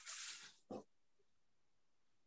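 Mostly near silence on a video call: a brief breathy exhale in the first half second, then a single short spoken word.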